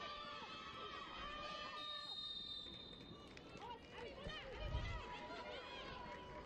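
Faint, scattered shouts and calls of footballers on the pitch, picked up by the field microphones in a near-empty stadium, with a dull low thump about three-quarters of the way through.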